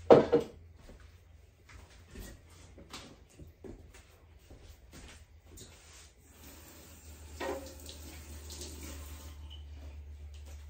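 Off-screen kitchen dish handling: a loud clatter right at the start, a few faint knocks, then water running for about four seconds in the second half, with another knock during it.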